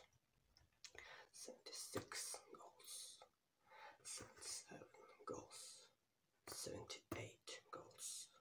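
A man whispering softly and close to the microphone in short phrases with pauses between them, with a few light taps or scratches in between.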